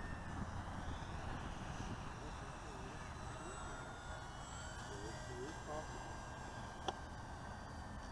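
E-Flite P-51 Mustang electric RC plane flying at a distance: a faint motor and propeller whine that slowly rises and falls in pitch as the plane passes, over steady low background noise. There is a single sharp click about seven seconds in.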